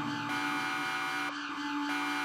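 Steady electronic alarm drone, a buzzing hum of several held tones from a looping warning sound effect. Its tone shifts slightly about a third of a second in and again past a second.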